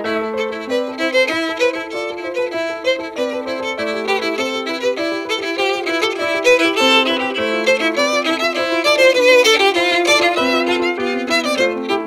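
A violin bowing a melody over a Yamaha stage keyboard playing a stepping accompaniment, as an instrumental passage with no singing.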